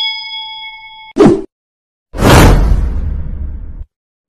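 Overlaid subscribe-button sound effect: a bell ding rings out and fades, a short whoosh comes about a second in, then a louder rushing noise with a deep rumble starts about two seconds in and cuts off abruptly just before the end.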